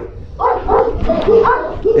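An American Pit Bull Terrier makes several short, pitched vocal sounds from about half a second in.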